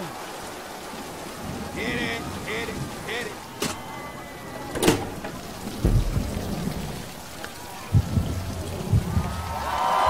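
Rain falling steadily, with thunder: two sharp cracks about four and five seconds in, then deep rumbling through the last few seconds.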